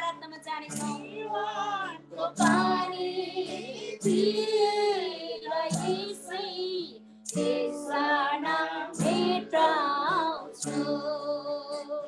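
A high voice singing a worship song, holding long wavering notes over steady low held accompaniment notes, heard through a video call.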